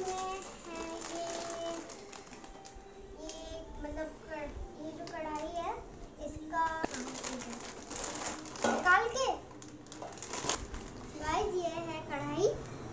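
Child talking while a stainless steel kadai is unwrapped, with a few sharp clicks and rustles from the plastic wrap and the steel pan being handled.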